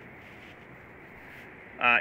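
Steady, faint hiss of outdoor background noise with no distinct event, then a man starts speaking near the end.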